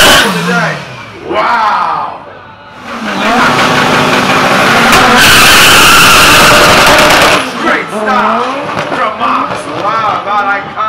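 A drag car's engine revving hard at the start line, its pitch sweeping up and down with its tires squealing in a smoky burnout, then a long stretch at full throttle as it launches. About two-thirds of the way in, the car noise drops away and voices take over.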